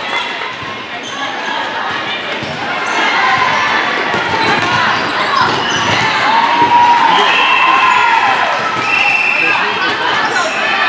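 Voices of players and spectators echoing in a large indoor gym, with a volleyball bounced on the court floor.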